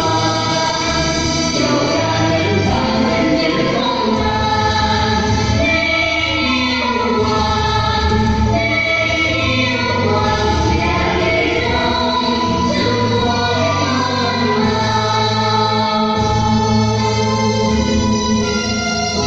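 Music from a Vietnamese tuồng stage performance: a group of voices singing held notes over instrumental accompaniment.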